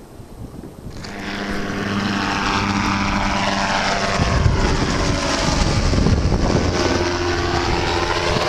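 Low-flying gyrocopter's engine and pusher propeller droning overhead. It swells in about a second in and then stays loud, its pitch sliding lower as it passes over.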